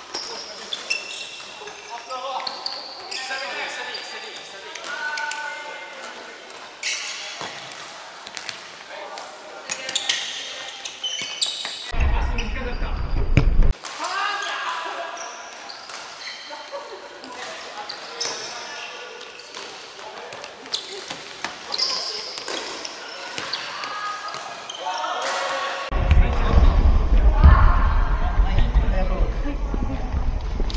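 A futsal ball being kicked and bouncing on a wooden sports-hall floor, sharp knocks that echo in the large hall, with players shouting and calling to each other. Two stretches of low rumble, one about halfway through and one near the end, are the loudest sounds.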